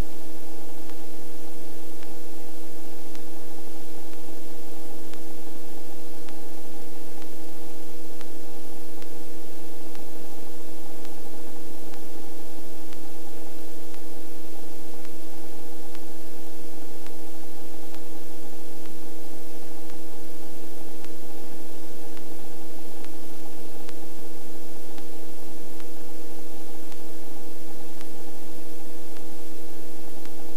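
Robinson R44 helicopter in low flight heard in the cabin: a steady drone of engine and rotors, with a few constant whining tones over an even hiss.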